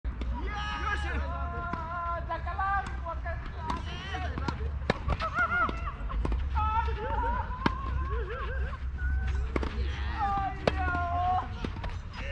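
Tennis balls struck by racquets during a doubles rally: sharp pops a second or two apart, the loudest sounds here. People's voices talk in the background, with a low wind rumble on the microphone.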